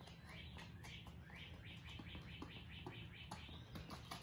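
Faint bird chirping: a quick run of short, rising chirps through the middle, with a few soft footfalls on concrete.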